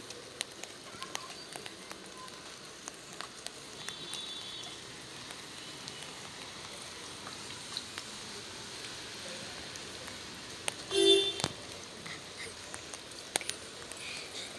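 Rain falling on a garden of potted plants: a steady patter with scattered sharp drip clicks. About eleven seconds in, a brief louder pitched call stands out over the rain.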